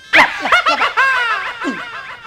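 A man laughing, a quick run of laughs that fall in pitch.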